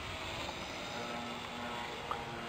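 Electric motors and propellers of a six-rotor RC hexcopter in flight on a 3-cell battery, a steady whirring hum with faint held tones.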